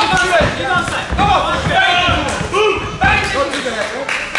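Several people shouting in a large hall, with occasional dull thuds from the ring.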